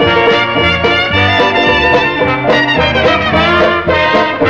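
A small jazz band playing: clarinet lead over piano, guitar and drums, with a low line stepping under it.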